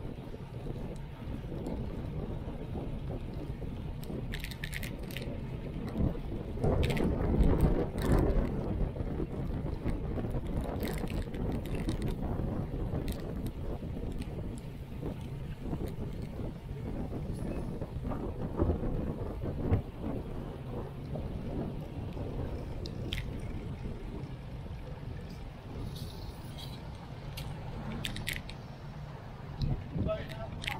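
Wind rushing over the microphone of a camera on a moving bicycle, with low road rumble, louder for a stretch about seven seconds in. Scattered short clicks and knocks come from bumps in the pavement.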